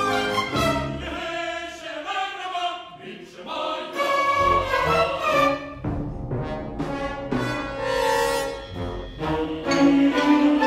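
Symphony orchestra playing, with brass to the fore, its sustained chords shifting every second or so.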